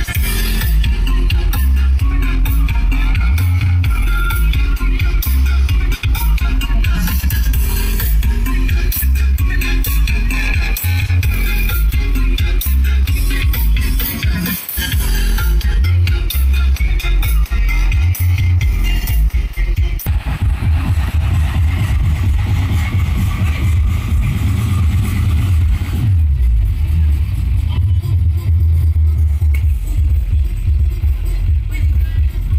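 Loud electronic dance music with very heavy bass, played through a large stack of bass speaker cabinets mounted on a truck.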